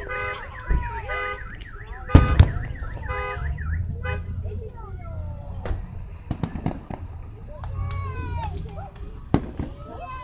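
A car alarm sounding a fast up-and-down warble alternating with pulsing tones, which stops about four seconds in. Fireworks bangs come at intervals over it, the loudest a pair close together about two seconds in.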